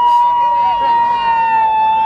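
An emergency vehicle siren wailing, holding one high, steady note.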